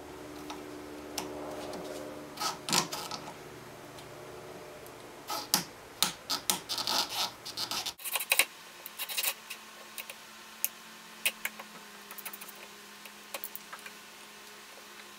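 Pliers working the spring clamps off the rubber fuel hoses on a diesel fuel filter: irregular metal clicks, scrapes and rubbing, busiest in the middle.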